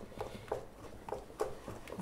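Wooden spoons stirring crêpe batter in mixing bowls, giving faint, irregular light taps and scrapes, about five in two seconds, as the spoons knock against the bowls while the lumps are worked out.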